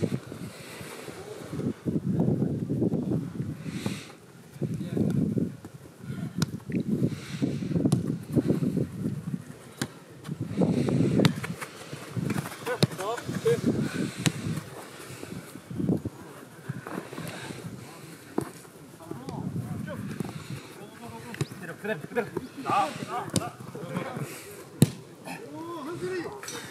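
Indistinct shouts and calls of footballers on the pitch, with scattered sharp thuds of a football being kicked on artificial turf.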